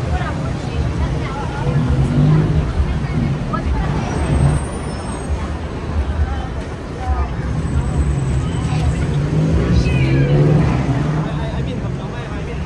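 Busy street ambience: a crowd chattering over a steady low rumble of vehicle engines.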